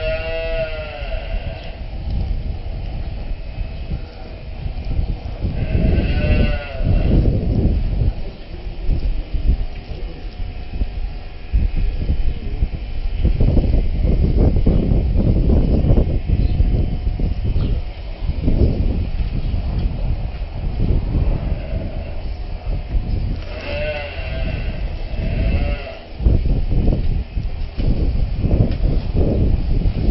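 Cows in a cattle crush mooing about four times: once near the start, once around six seconds in, and twice close together near the end. Each call rises and falls in pitch. Loud low rumbling and knocking noise runs underneath and is the loudest sound for much of the second half.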